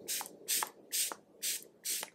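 Finger-pump mist bottle of d'Alba First Spray Serum spritzed onto the face in short, high-pitched hisses, about two a second, five in all.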